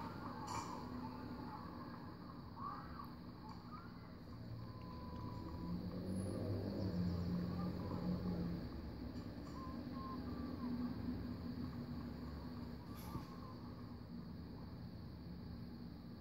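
Faint outdoor background at a track meet: a low steady rumble that swells slightly in the middle, with a few faint, brief higher calls.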